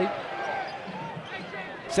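Basketball arena ambience: a steady crowd murmur under a few faint, short calls or squeaks from the court, with no ball bouncing.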